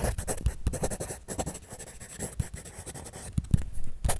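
Pen scratching on paper as lines are drawn, in many short, irregular strokes: busier in the first second and again near the end, sparser in between.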